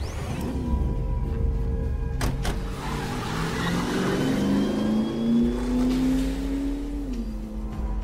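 An old sedan's engine revving as the car accelerates, its pitch rising steadily for several seconds and dropping near the end, as at a gear change. Two sharp knocks come about two seconds in, before the engine rises.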